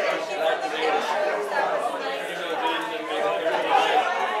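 Many voices talking at once: a congregation chatting as people greet one another.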